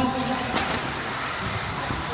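Radio-controlled 4x4 off-road cars racing on an indoor track: a steady noisy rush of their motors and tyres, echoing in the hall, with a short sharper sound about half a second in.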